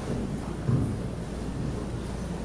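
Handheld microphone handling noise: a low rumble with a single dull thump about 0.7 s in as the mic is held and moved between hands.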